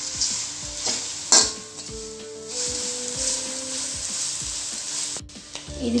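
A spatula stirring and scraping grated tapioca as it fries dry in an aluminium kadai, with a steady light sizzle. About a second and a half in, the spatula gives one sharp clack against the pan.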